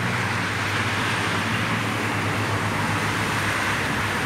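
Steady road-traffic noise with a low engine hum.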